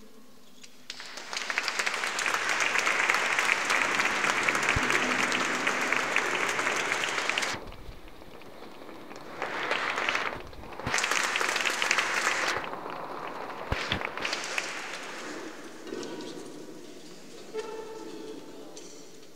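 Audience applauding: clapping starts about a second in and holds steady for several seconds, breaks off, then comes back in two shorter rounds and a few scattered claps before dying away.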